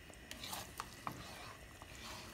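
A spatula stirring thick garlic-chili paste in a frying pan, with several short scrapes and light knocks against the pan over a low sizzle of hot oil.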